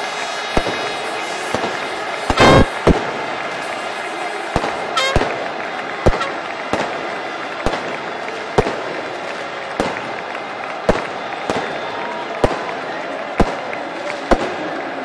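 Firecrackers going off in a stadium crowd: sharp single bangs, most about a second apart, with a longer crackling burst about two and a half seconds in, over the steady din of the crowd.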